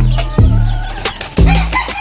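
Background music with a heavy steady beat, about two beats a second. About three-quarters of the way in, a game rooster starts crowing over the music.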